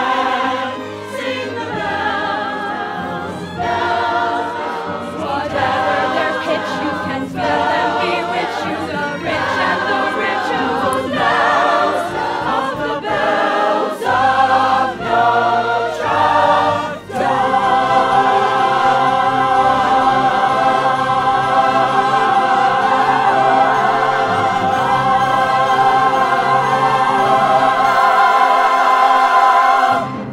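Choir and cast of a stage musical singing the finale with the pit orchestra: a few short sung phrases, then one long held final chord from about halfway through that cuts off at the end.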